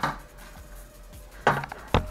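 Wire-mesh air fryer basket of french fries being set down on the counter: two short knocks and a rattle about a second and a half in, the second knock sharper.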